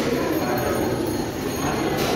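A steady, indistinct background din with a low rumble and no single clear sound standing out.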